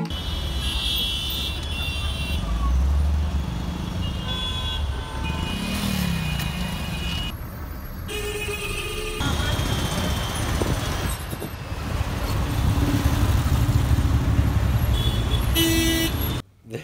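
Busy street traffic: engines running, with horns sounding in short honks several times and voices in the background.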